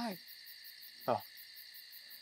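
A man's short vocal sound, one brief utterance sliding steeply down in pitch, about a second in. Under it runs a steady high chirring of night insects with a fast even pulse.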